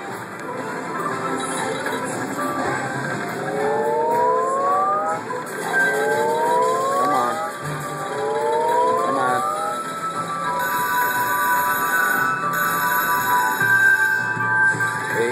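Video slot machine playing its free-spin bonus sounds: electronic music with three rising electronic sweeps in the middle as the reels spin and stop, then steady held tones in the last few seconds.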